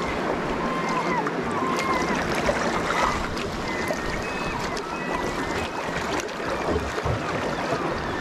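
Sea water lapping and sloshing around a concrete tetrapod breakwater, a steady rushing noise. A few short, faint high tones come and go in the first half.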